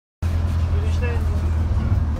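Bus running, heard from inside the passenger cabin: a steady low engine drone with road noise.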